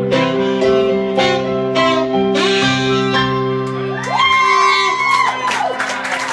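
Live band's closing notes: guitar and tenor saxophone holding long sustained notes, then audience whoops and cheers breaking in from about four seconds in as the song ends.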